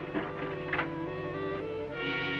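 Background music score with held notes and a couple of sharp percussive strokes, the music changing near the end.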